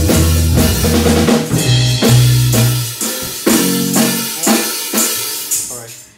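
A band playing live in a rehearsal room: drums, electric keyboard chords and a low bass line. About halfway through the bass drops out and the band plays a run of accented hits about twice a second, growing quieter as the song winds down.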